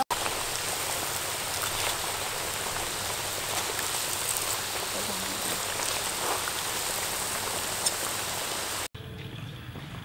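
Hot oil sizzling steadily as ring-shaped dough cakes deep-fry in a wok, with a few light ticks from the metal skimmer and popping oil. The sizzle cuts off suddenly near the end.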